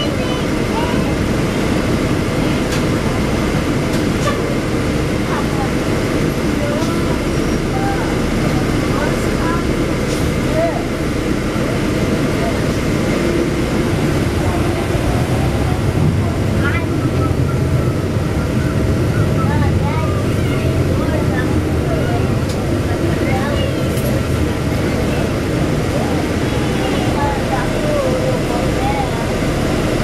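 Inside a NABI 416.15 transit bus under way: steady engine and road noise, the low rumble growing stronger in the middle stretch, with indistinct passenger voices in the background.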